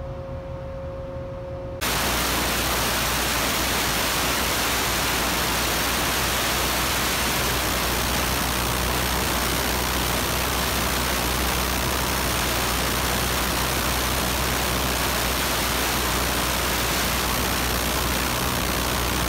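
Pneumatic needle scaler (chipping gun) running continuously, its needles hammering rust and scale off steel. It makes a loud, steady, dense noise that starts suddenly about two seconds in.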